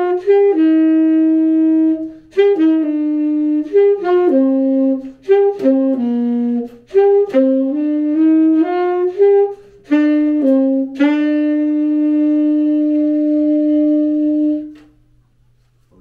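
Solo saxophone improvising a phrase of short notes that jump up and down, ending on one long held low note that stops about a second before the end.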